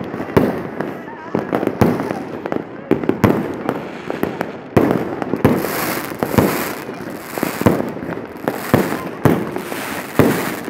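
Many fireworks and firecrackers going off around at once: a dense, irregular run of sharp bangs, some close and loud, others farther off. A hissing crackle rises over them from about halfway through.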